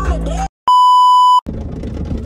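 Music cuts off about half a second in, and a loud, steady single-pitch electronic bleep, the kind edited in as a censor tone, sounds for under a second before cutting off abruptly. Low background noise follows.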